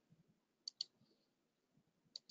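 A faint quick double-click of a computer mouse, two sharp clicks about a tenth of a second apart, against near silence.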